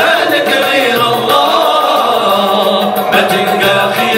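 A male ensemble singing an Islamic devotional song (inshad) together in chorus, backed by darbuka and bendir hand-drum beats.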